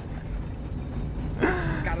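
Car engine and tyre noise heard from inside the cabin while driving slowly, a steady low rumble. A short voice sound, like a breath or gasp, comes about a second and a half in.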